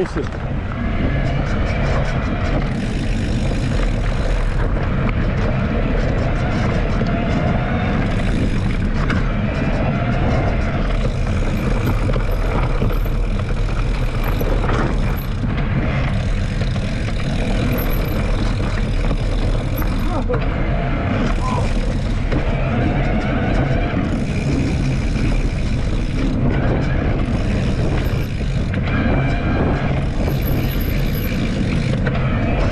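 Steady wind buffeting on a bike-mounted action camera's microphone, with knobby mountain-bike tyres rolling over a dirt trail, while riding an electric mountain bike.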